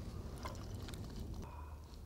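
Beer being poured from an aluminium can into a glass: a faint pouring of liquid with a few small clicks.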